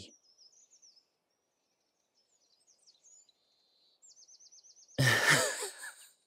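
Faint birdsong in the background, with short chirps and a quick trill about four seconds in. About five seconds in, a man lets out a loud breathy exhale, like a sigh.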